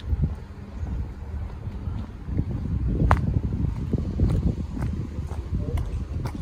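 Wind buffeting the phone's microphone outdoors, a low fluctuating rumble, with a few faint clicks.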